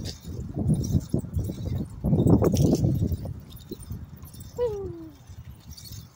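Wind buffeting a phone microphone while cycling, in loud low rumbling gusts. About two-thirds of the way in, a single short tone falls in pitch.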